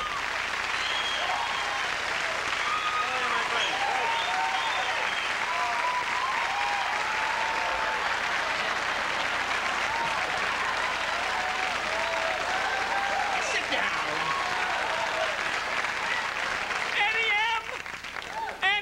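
Studio audience applauding steadily, with scattered cheers and shouts through the clapping. A man starts speaking about a second before the end.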